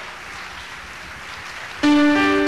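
Audience applause tailing off to a faint hiss. Near the end, a keyboard begins the song's intro with sustained chords.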